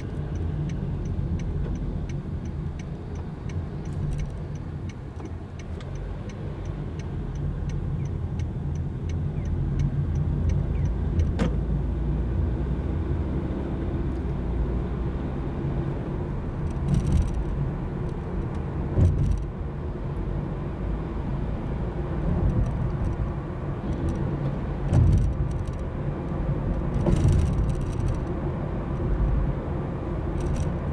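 Inside a car's cabin: engine and road rumble, growing louder as the car pulls away about ten seconds in. The turn-signal indicator ticks about twice a second until then. A few short thumps come in the second half.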